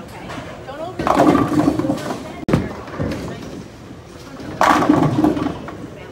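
Bowling ball rolling down the lane and crashing into the pins, twice: a clatter of pins about a second in and again near the five-second mark, over the chatter of a bowling alley.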